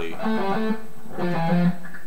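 Electric guitar playing a slow single-note picking exercise: repeated triplets on one note alternating with short three-note walks down the scale, in short phrases with brief gaps between them.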